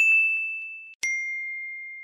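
Two bell-like ding sound effects from a like-and-bell button animation: a high ding at the start that rings out for about a second with a couple of faint ticks under it, then a lower ding about a second in that rings on to the end.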